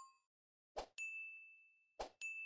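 Faint subscribe-animation sound effect: a soft click about three-quarters of a second in, then a single high bell-like ding that rings for about a second.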